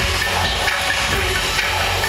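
Live pop concert music played loud through an arena sound system, heard from the crowd, with a heavy bass line.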